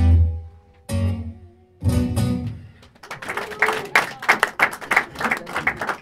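Acoustic guitar strumming three final chords about a second apart, each left to ring out. About three seconds in, a small audience breaks into applause.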